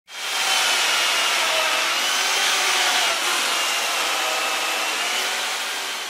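Electric power tool grinding into a block of ice: a steady motor whine that wavers slightly in pitch, over a hiss of cut ice.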